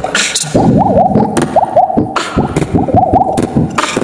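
Solo mouth beatboxing: from about half a second in, a run of quick rising water-drop pops over a low bass beat. The sharp hi-hat and snare sounds mostly drop out until near the end.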